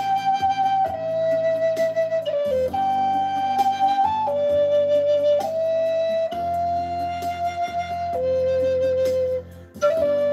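Native American-style flute in mid-A, made of walnut, playing a slow melody of long held notes that step between pitches, with a brief break for breath about nine and a half seconds in.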